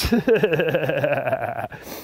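A man laughing, a run of quick pulses that stops shortly before the end.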